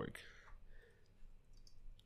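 Faint keystrokes on a computer keyboard: a few scattered light clicks, a small cluster of them near the end.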